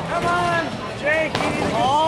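Voices calling out in short, high whoops whose pitch rises and falls, with one sharp knock a little past halfway.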